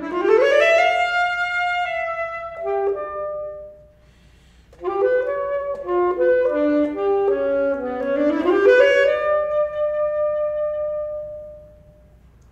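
Unaccompanied alto saxophone playing two free-flowing phrases. Quick runs of notes sweep upward into a long held note. After a short pause about four seconds in, a second run rises again and ends on a held note that fades away near the end.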